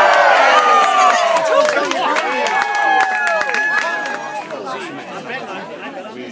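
A crowd of people shouting and cheering, many voices overlapping, loudest at the start and dying down toward the end.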